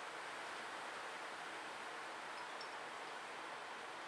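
Steady, even hiss of heavy rain falling outside.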